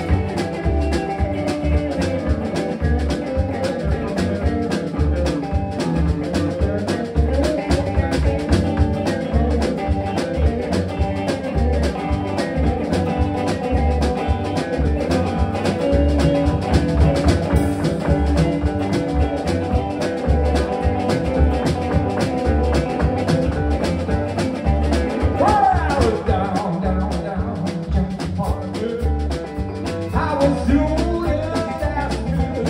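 Live blues band playing: two electric guitars, electric bass and drum kit keep a steady beat, with a note bent up and down near the end.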